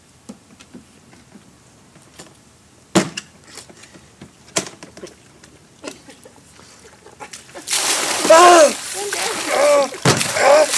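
A few scattered knocks as a picnic cooler full of ice water is lifted, then, from about eight seconds in, a loud rush of ice water pouring and splashing out of the tipped cooler, with a voice crying out over it.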